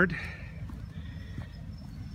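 Pause between spoken phrases: low steady background rumble on the microphone, with a couple of faint soft thumps.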